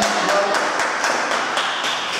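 Murmur of many children's voices in a school gym, with a few light taps and footsteps on the wooden parquet floor.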